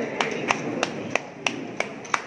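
Hand clapping: sharp, separate claps about three a second, over a low murmur of the hall.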